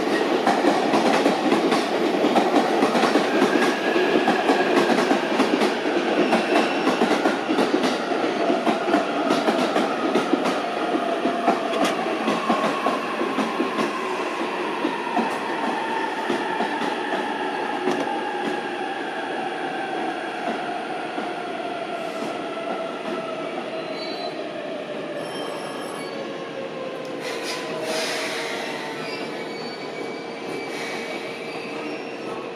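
Electric train slowing down: several whining tones fall steadily in pitch as it brakes, over rattling and squealing wheels. It gets quieter as it slows and settles into a steady hum near the end.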